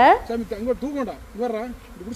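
Honeybees buzzing close by, their hum rising and falling in pitch as they fly around, from bees disturbed by the honeycomb harvest.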